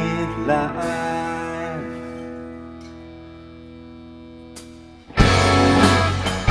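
Live rock band playing: held guitar chords, with a few sliding notes early on, fade down over several seconds. About five seconds in, the full band comes back in loudly.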